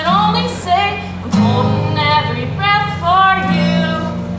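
A girl singing a country-pop song in phrases, accompanying herself on a steel-string acoustic guitar.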